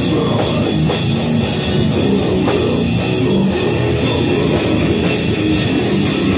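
Metal band playing at full volume: distorted electric guitars over a drum kit with crashing cymbals, dense and unbroken.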